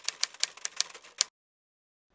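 Typewriter key-strike sound effect: a quick, slightly uneven run of clacks, about six or seven a second, that stops just over a second in.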